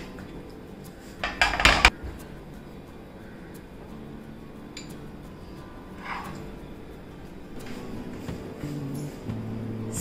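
Spatula scraping and knocking against a non-stick frying pan while stirring a thick halwa that is being cooked down until dry, loudest in a quick run of knocks and scrapes about a second in, then a few lighter knocks.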